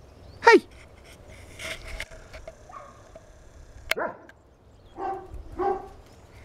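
Dog yelping and whining in short calls that fall in pitch: a loud one about half a second in, another near four seconds, and two softer ones near the end.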